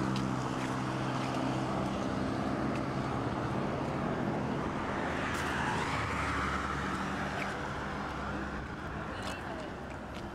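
Road traffic: a vehicle's engine hums steadily for the first few seconds and then fades, and a louder rushing swell rises and dies away around the middle, over a steady bed of noise.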